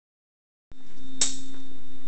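A steady low hum begins about two-thirds of a second in and holds at one pitch, with a single sharp click about a second in.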